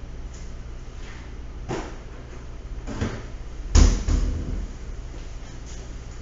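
A couple of light knocks, then a heavy thump about four seconds in, followed quickly by a second one, over a steady low hum.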